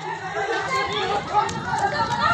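Several people's voices shouting and talking over one another in the street.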